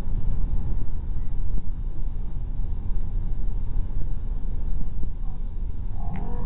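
Steady low rumble of a car on the move, heard from inside the cabin: engine and road noise with no break.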